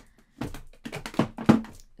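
Eyeshadow palettes knocking and clacking against each other as they are slid and pushed into place in a drawer: a quick run of about five knocks, the loudest about a second and a half in.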